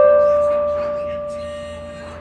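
Portable electronic keyboard in a piano-like voice: a single note held and slowly fading.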